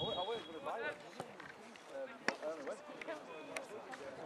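Footballers shouting and calling to each other across an open pitch during play, with a few sharp knocks of the ball being kicked.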